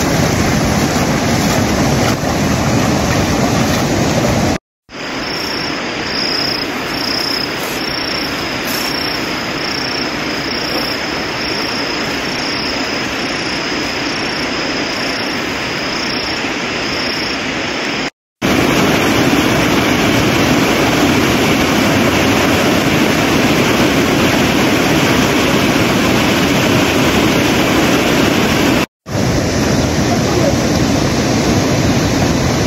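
Steady rush of water on a rainy day, cut off briefly three times. In the middle stretch a faint high chirp repeats about once a second over it.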